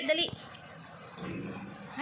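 A small dog whining briefly and low in the second half.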